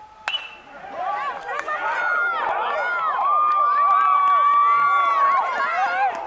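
A bat hits the ball with a sharp crack with a short ringing tail, a fraction of a second in. Spectators then yell and cheer, building into many overlapping shouts, one voice holding a long yell for about two seconds.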